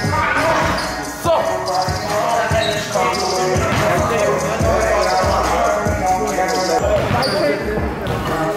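A basketball bouncing several times on a sports hall floor, the bounces unevenly spaced, under voices.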